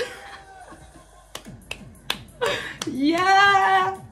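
Finger snaps, about four sharp clicks through the middle, over electronic dance music with a steady beat, then a long held vocal whoop in the last second.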